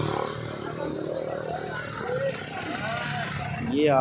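Road traffic on a bridge: a passing vehicle's engine fading away just after the start, then a low traffic rumble with faint voices of passers-by. A man's voice speaks briefly near the end.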